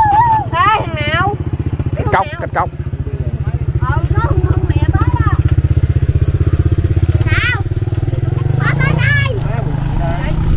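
Kite hummer, a taut vibrating strip on the kite's bow, buzzing in a strong wind: a low, fast-pulsing drone that swells in the middle and eases near the end.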